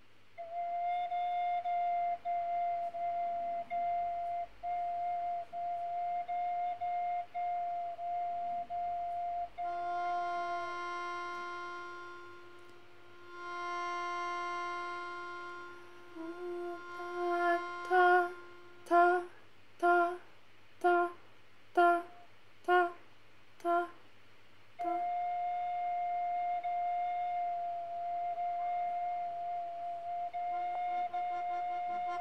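A slide whistle and a melodica playing long held notes: a steady high whistle tone with brief breaks, joined about ten seconds in by a lower, reedy melodica note. Then a run of short detached notes about a second apart, and near the end the high tone is held again.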